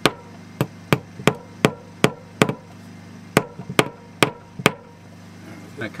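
Hammer tapping while fastening a cable: about eleven sharp strikes, roughly three a second, in two runs with a short pause near the middle.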